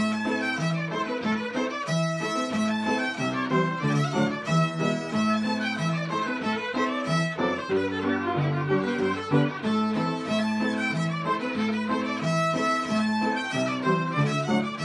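Two fiddles playing a brisk reel together over piano accompaniment. Both fiddles are tuned down to match a very flat piano.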